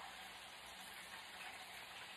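Faint, steady sizzle of fries frying in hot oil in an electric double deep fryer.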